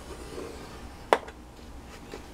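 Quiet stylus scoring of cardstock on a paper scoring board: a faint soft scrape, then a single sharp click about a second in.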